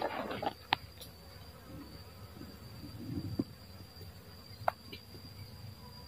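Low, steady buzzing hum of a cluster of dwarf honeybees (Apis florea), with a brief rustle at the start and a few sharp clicks.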